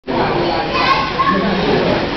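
Indoor swimming pool hubbub: children playing and voices calling, over a steady wash of noise, with water splashing close by.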